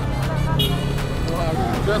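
Street traffic noise: a steady low engine hum under faint voices.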